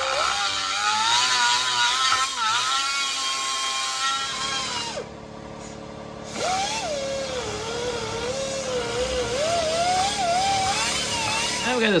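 Handheld rotary tool with a wide-tooth burr bit grinding a V-groove along a crack in the molded plastic of a 1968 Pontiac Firebird steering wheel. Its motor whine wavers in pitch as the bit bites. It spins down about five seconds in and spins back up a second and a half later.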